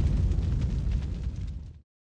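Low rumbling tail of a cinematic boom in a TV channel's outro sting, fading steadily and cutting off a little before the end.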